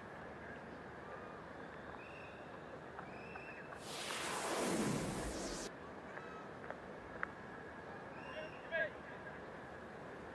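Broadcast transition whoosh: about four seconds in, a loud rushing sweep falls in pitch for under two seconds and cuts off suddenly as the on-screen graphic comes in. Under it runs faint stadium ambience with distant voices.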